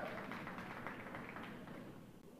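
Audience applause dying away.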